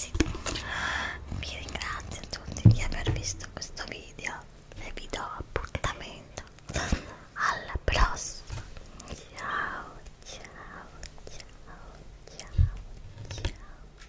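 A woman whispering close to the microphone, with small clicks between phrases. A few soft thumps come about 3, 8 and 12.5 seconds in.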